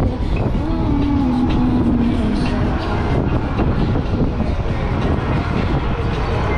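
Steady wind rush and low rumble on an action camera's microphone while riding an electric scooter in traffic, with a faint wavering tone in the first half.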